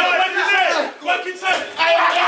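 Spectators shouting at the boxers, several voices yelling at once, with a brief lull about a second in.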